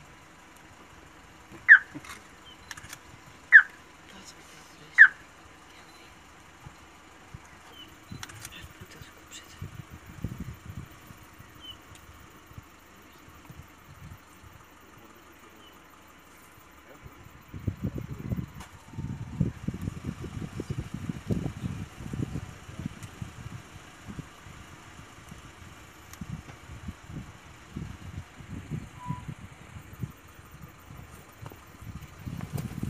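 A bird gives three short, falling whistled calls about two seconds apart in the first five seconds. From about 17 seconds on come irregular low scraping and thudding bursts, a leopard digging loose soil out of a warthog burrow.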